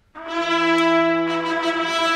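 An orchestra's brass comes in with a sudden loud held chord after near silence. More notes join in as the chord sustains.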